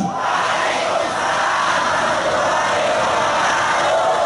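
A large crowd shouting back the reply to the Islamic greeting ("Wa'alaikumussalam...") together, a dense mass of many voices held for about four seconds and trailing off near the end.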